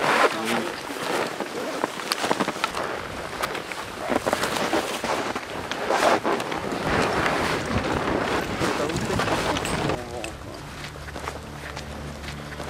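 Indistinct, muffled voices over rustling and crunching noise. About ten seconds in, the sound drops to a quieter, steady low hum.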